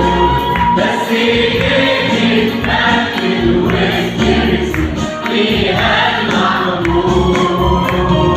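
Mixed choir of men and women singing an Arabic Christian hymn into microphones, amplified, over instrumental backing with sustained bass and a steady beat.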